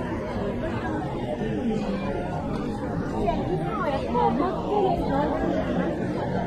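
Chatter of a dense crowd of passing pedestrians, several voices talking at once over a steady street hubbub, with one nearer voice standing out in the middle.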